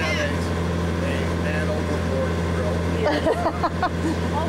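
A sailboat's auxiliary engine running steadily while motoring under way, a constant low drone, with talk starting over it about three seconds in.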